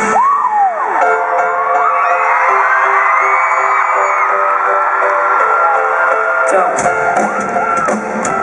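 Arena crowd screaming and cheering, many high shrieks wavering up and down, over held keyboard notes while the bass and drums drop out. The low end of the band comes back in about seven seconds in.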